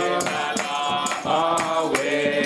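A small group singing a gospel praise chorus together on long held notes, with a tambourine jingling in time.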